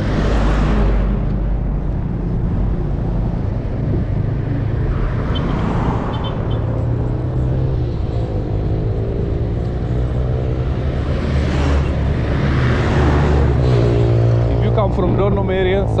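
Road traffic going past: a minibus passes at the start, and more vehicles pass about six and twelve seconds in, over a steady low rumble.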